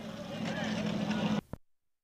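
Outdoor background: a steady low hum with faint distant voices. It cuts off abruptly about a second and a half in, followed by dead silence at an edit.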